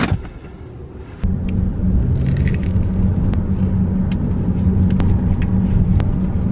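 Loud, steady low road-and-engine rumble heard inside a car cabin, starting suddenly about a second in, with a few sharp clicks over it.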